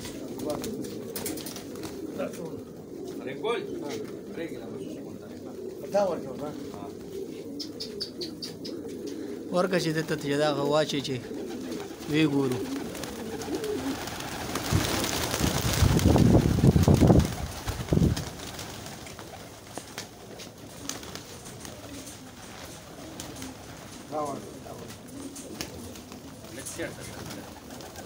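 A large flock of domestic pigeons cooing steadily in a loft. Just past the middle, a louder burst of rustling noise lasts about three seconds.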